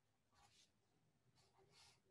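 Near silence, with two faint scratchy strokes of a felt-tip marker writing on paper, about half a second in and near the end.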